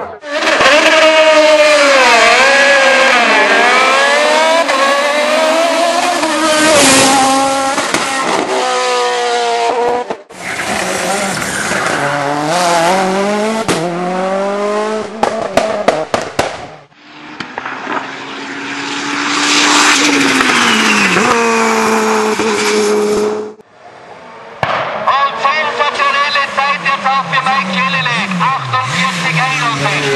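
Several hill-climb race cars, one after another, their engines revving hard and dropping back between gear changes. Sharp exhaust pops and crackles (backfires) break through, densest near the end.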